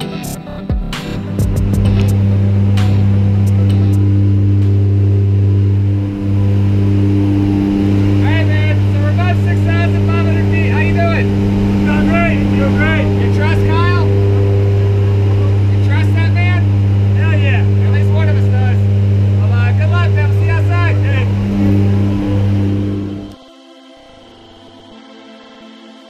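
Light aircraft's engines droning steadily in the open-door cabin of a jump plane, a low, even drone that cuts off suddenly near the end. A man's voice speaks over it in the middle stretch.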